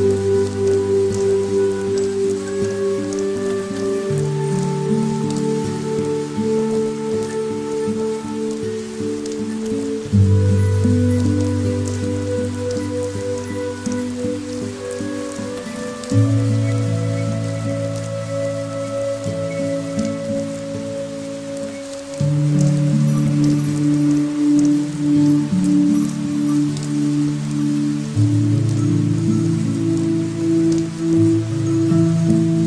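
Steady rain falling, with scattered drop ticks, under music of slow held chords that change about every six seconds.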